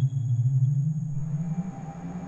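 Electronic glitch/illbient music from a Pure Data patch, made of randomly chosen samples processed with reverb and delay: a low droning tone that slowly rises in pitch and fades out near the end, over a steady high whine.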